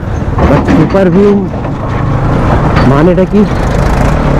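Bajaj Pulsar NS200's single-cylinder engine running as the motorcycle rides along, a steady low rumble that grows a little louder in the second half. A man's voice breaks in briefly twice.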